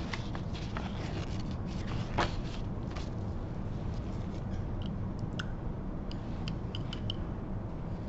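Sheets of paper being handled, with scrapes and rustles, over a steady low room hum; later a few light, sharp clicks, like a brush tapping against a small glass beaker.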